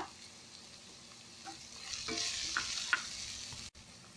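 Chopped onion, carrot and capsicum sizzling in oil in a kadai while being stirred, with a few light clicks of the spatula against the pan. The sizzle is faint at first and grows louder about a second and a half in.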